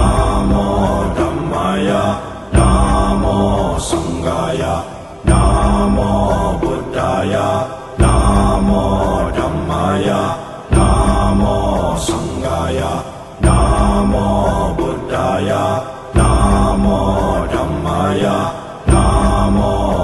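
Music with a chanted Buddhist mantra over a strong low backing, built on a looping phrase that restarts with a sharp attack about every two and a half seconds.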